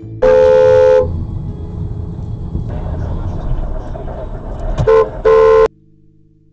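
Car horn sounding: one blast of under a second, then two short blasts near the end. Under it runs the steady engine and road noise of a moving car heard from inside the cabin.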